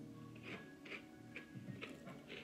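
Soft, regular crunches of a person chewing cereal in milk, about two a second, over faint background music.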